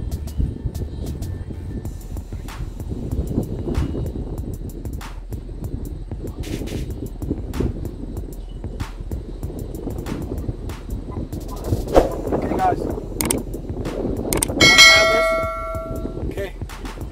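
Steady low background noise with scattered soft clicks, then near the end a bright bell-like chime that rings for about a second and fades. The chime is a notification-bell sound effect for a subscribe-button graphic.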